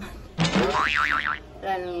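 A springy cartoon 'boing' sound effect: it starts suddenly and then wobbles up and down in pitch about four times over about a second.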